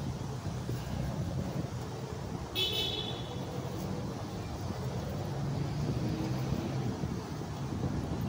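Low, steady road-traffic rumble, with one short, high toot about two and a half seconds in.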